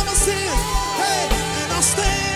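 Live gospel worship band playing: several singers over electric bass, keyboard and drum kit, with a steady kick-drum beat and a bright cymbal crash twice.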